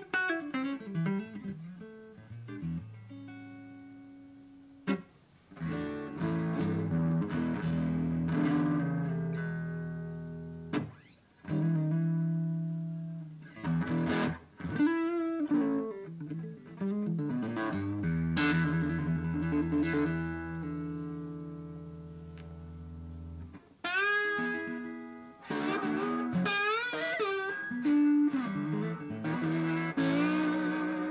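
Godin 5th Avenue Kingpin hollow-body archtop guitar with a single P-90 pickup, played through an amp: held chords and single-note lines in a blues and bebop style. Later on the lines bend up in pitch with vibrato.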